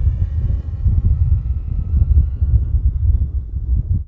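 Low wind noise on the microphone, with the faint thin whine of a DJI Mini 3 Pro's propellers from the drone flying some way off, fading toward the end; the small drone is barely audible, a sign of how quiet it runs.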